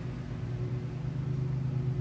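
A steady low machine hum, like a motor or engine running, holding unchanged throughout.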